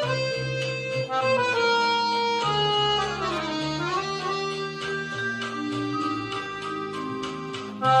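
Weltmeister piano accordion playing jazz: sustained chords over bass notes, with a quick run sliding down and back up about a third of the way in, and a louder accented chord near the end.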